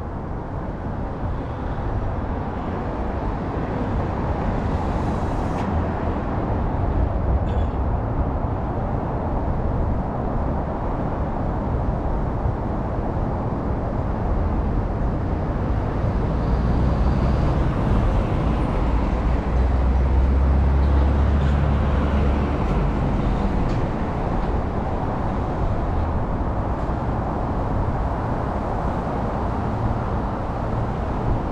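Steady city road traffic noise, with a louder low rumble that swells for several seconds past the middle.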